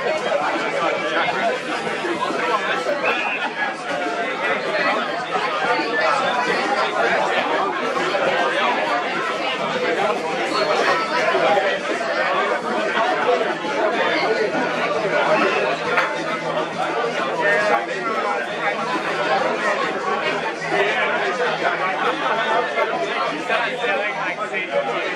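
Crowd chatter: many voices talking over one another in a steady babble, with no single voice standing out.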